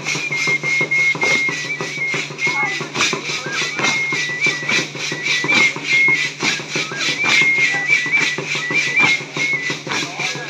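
Music for a Guadalupan dance: a high, whistle-like melody stepping between a few notes over a steady, fast drumbeat.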